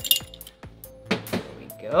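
Metal measuring spoons clinking several times as a teaspoon of salt is scooped from a salt cellar.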